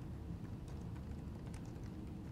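Typing on a laptop keyboard: a run of light, irregular key clicks over a low background hum.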